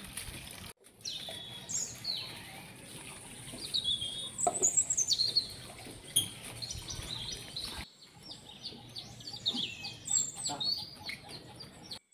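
Birds chirping and calling: quick high chirps and short whistled sweeps, busiest about four to five seconds in.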